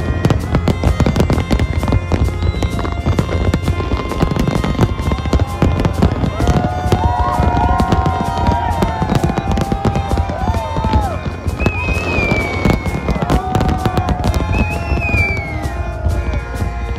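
Fireworks display crackling and popping in a rapid, continuous stream, with music playing over it and a few high gliding whistle-like tones in the second half.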